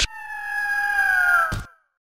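Intro logo sound effect: a sharp hit, then a single bird-of-prey screech held for about a second and a half and falling slightly in pitch, ended by a second hit.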